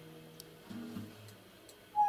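Classical nylon-string guitar played quietly: a chord rings on and fades, then a few soft low notes about two-thirds of the way in, with faint clicks. A loud new chord is struck right at the end.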